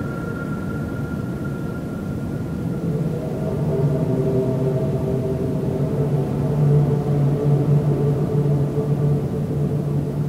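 Dark ambient drone music: a dense, low rumbling wash of distorted noise with held tones. Deeper sustained tones swell in about three seconds in and grow louder.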